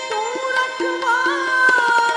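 Live shabad kirtan: sustained pitched notes under a melody that slides in pitch, with tabla strokes.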